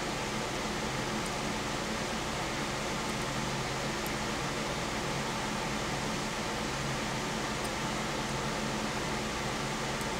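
Steady background noise of a running fan: an even hiss with a faint low hum, unchanging throughout.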